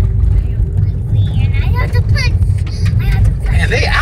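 Steady low rumble of a car driving on a dirt road, heard from inside the cabin: tyre and engine noise. Faint voices in the middle, and speech starts near the end.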